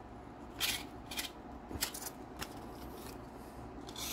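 An Old Forge Barlow pocket knife's stainless steel blade slicing through a sheet of paper in several short, scratchy strokes. The edge is really rough and cuts the paper, but not well.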